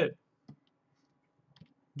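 A spoken word trails off at the start. Then it is quiet except for a faint single click about half a second in and another smaller one shortly before the end: clicks from the computer's input devices as the sculptor works.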